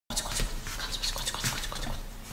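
Someone coaxing a cat: a rapid string of short clicks and rustles.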